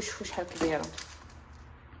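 A woman's voice for about the first second, then a soft rustle of a chocolate bar's foil and paper wrapper being handled.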